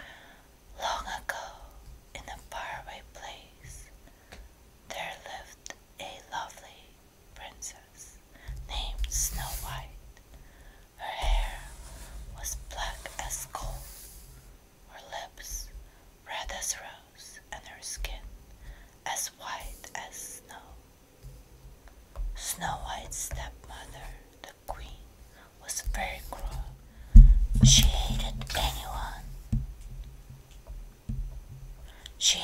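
A woman whispering close to the microphone in short phrases, with a few soft low thumps; the biggest comes near the end.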